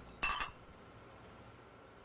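A single short, bright ringing clink about a quarter of a second in, dying away within half a second.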